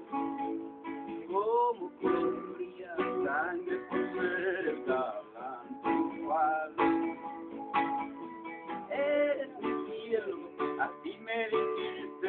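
Acoustic guitar played by hand: a melodic instrumental passage of plucked notes and chords that ring on.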